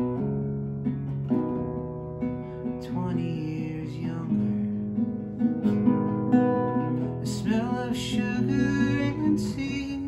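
Nylon-string classical guitar played fingerstyle, an instrumental passage of plucked notes and chords with no singing.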